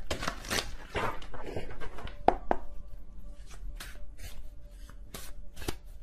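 Tarot cards being shuffled by hand: a run of irregular papery snaps and taps.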